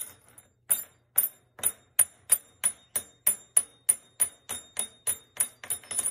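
A small metal object held in a green-cheeked conure's beak, rapped again and again on a hard surface: sharp metallic clinks with a bright ring, about three a second.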